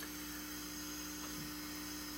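Steady electrical mains hum: a low buzz of several unchanging tones over a faint hiss.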